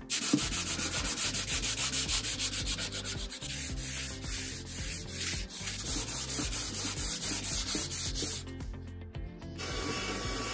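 Hand sanding a wooden panel with a sanding block: quick, rhythmic back-and-forth rasping strokes. Near the end the sanding stops and a cordless handheld vacuum starts with a steady hum to pick up the dust.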